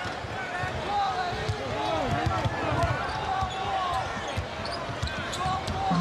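Arena crowd murmur with a basketball being dribbled on a hardwood court, its bounces thudding under the crowd.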